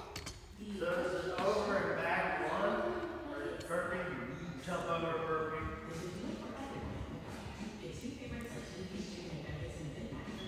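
Indistinct talking, too unclear for the words to be picked out, loudest in the first half.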